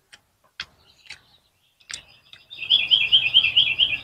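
A few short sharp clicks, then about halfway through a bird starts chirping loudly in a quick repeated run of high notes, about six a second.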